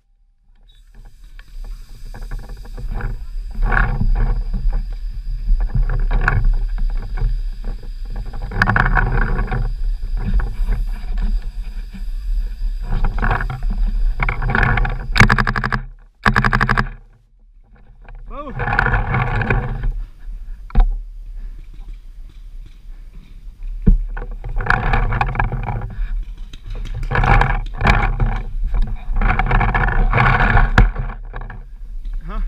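Muffled, breath-like noises come close to the microphone in bursts every few seconds. Under them runs a steady low rumble of wind and handling noise on the camera.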